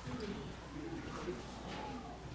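Faint low murmuring voices and light rustling of songbook pages in a quiet room, over a steady low electrical hum.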